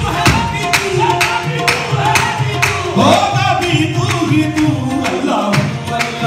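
A qawwali ensemble performing live: harmoniums holding steady notes under male voices singing, over a steady beat of tabla and hand-claps.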